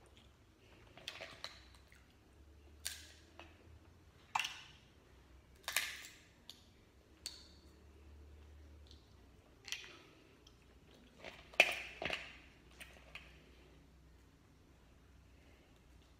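Crab-leg and shrimp shells being cracked and peeled by hand: a dozen or so sharp, irregular cracks and clicks, the loudest about three-quarters of the way through, dying out shortly before the end. A faint low hum runs underneath.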